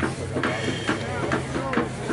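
Spectators' voices chattering and calling out, several overlapping with no clear words, over a steady low hum.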